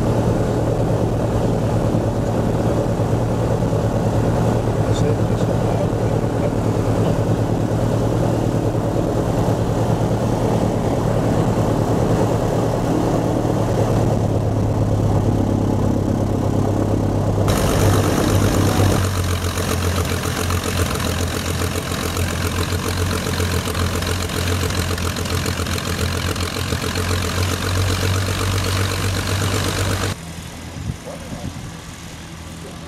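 De Havilland Dragon Rapide's six-cylinder inline piston engines running at low power with propellers turning, heard from inside the cabin while the biplane taxis on grass. A steady low engine hum, whose sound changes a little over halfway through as a higher hiss comes in.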